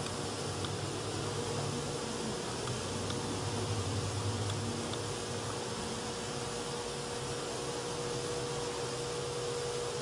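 Steady electrical hum with a faint buzzing tone and hiss, unchanging throughout, with no distinct clicks or events.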